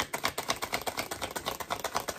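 A tarot deck being shuffled by hand, the cards flicking against each other in a rapid, even run of crisp clicks, about ten a second.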